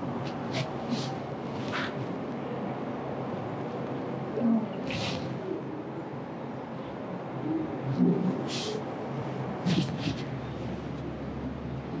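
A woman taking short, sharp sniffing breaths, about half a dozen of them, with faint low voice sounds, while a nasal splint is slowly drawn out of her nose after rhinoplasty; she is in tears from the discomfort.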